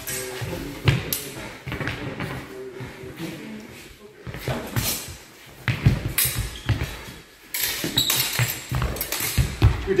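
Rapier and dagger sparring: sharp clashes of steel blades and the thuds of quick footwork on a sports-hall floor, echoing in the large hall. A blade rings briefly about eight seconds in.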